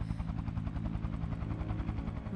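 Helicopter rotor beating in a fast, steady rhythm.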